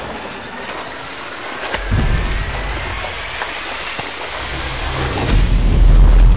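Churning, splashing water from a saltwater crocodile's death roll, laid under a slowly rising whine-like whoosh that swells into a deep boom near the end.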